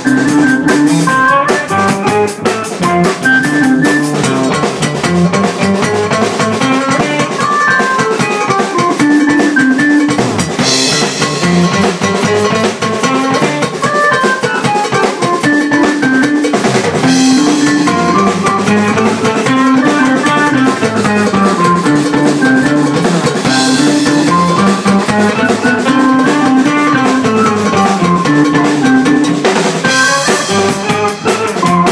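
A small rock band playing an instrumental piece together: drum kit, electric guitar and keyboard, with a melodic line rising and falling and several cymbal crashes.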